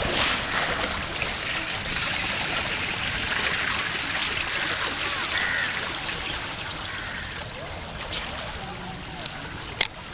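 Splashing of a swimmer doing front crawl in a swimming pool, arms and kicks churning the water surface in a steady wash that eases near the end. A short sharp click comes just before the end.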